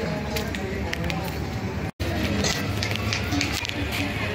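Outdoor street ambience of people's voices with music playing. There is a brief drop to silence about two seconds in.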